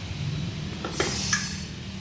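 Two light metallic clinks with a brief ring, about a second in, as metal scooter CVT parts are handled, over a steady low hum.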